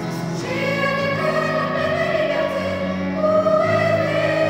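Children's choir singing, with long held notes that move to a new pitch about half a second in and again near the end.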